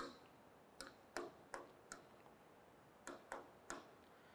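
Faint, light taps of a pen on an interactive display screen: about eight sharp clicks at uneven intervals.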